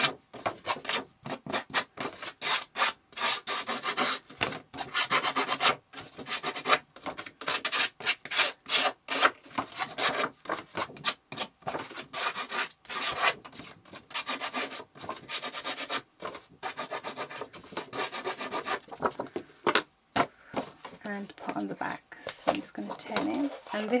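Scissor blade scraped along the edge of a sheet of paper in many quick, irregular strokes, distressing the edge to give it a worn, frayed look.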